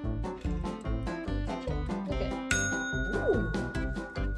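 A small desk service bell struck once by a dog, a single clear ding about two and a half seconds in that rings on, over background music.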